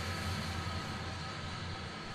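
A steady low hum with a faint even hiss over it.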